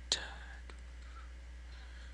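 Quiet room tone with a steady low hum and faint hiss, broken by a single faint click about two-thirds of a second in.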